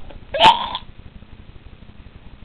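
One short, sharp vocal noise from a person's voice about half a second in, over a faint steady low hum.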